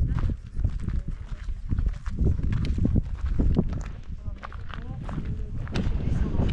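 Footsteps on a dirt and gravel path, heard as a string of short knocks, under a heavy low rumble of wind buffeting the microphone.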